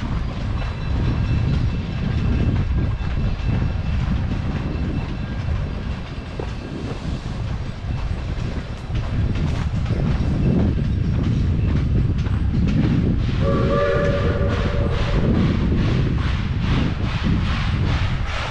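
A train running with a steady low rumble, then sounding its whistle once for about two seconds near the end.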